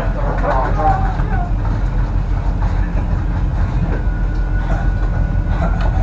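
A steady low machinery rumble fills the room. Men's voices talk over it in the first second or so, and a thin steady tone joins about four seconds in.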